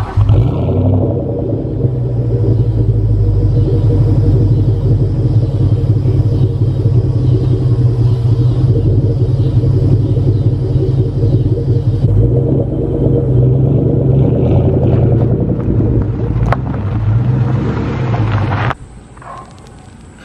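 A 2003 Ford Mustang SVT Cobra's supercharged 4.6-litre V8 idling steadily through its SLP Loudmouth catback exhaust, with a deep, even exhaust note. It stops abruptly near the end.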